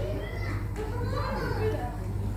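Indistinct voices, children's among them, chattering over a steady low hum.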